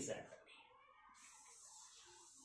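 Felt-tip marker drawing on a whiteboard, faint, with a thin squeak and scratch starting about a second in, after the last word of speech fades.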